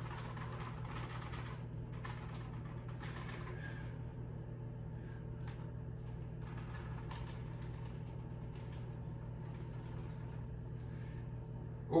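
Dry pancake mix being scooped from its bag with a measuring cup and poured into a stand-mixer bowl: faint rustling and light taps over a steady low hum.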